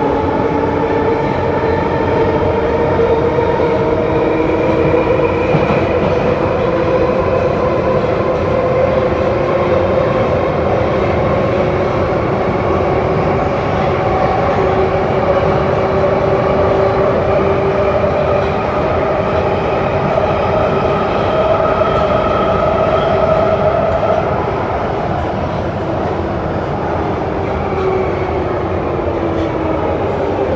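London Underground 1972 Stock train heard from inside the car while running through a tunnel: a steady rumble of wheels on rail under a whine from the traction motors and gears that drifts slowly up and down in pitch. It becomes a little quieter about three-quarters of the way through.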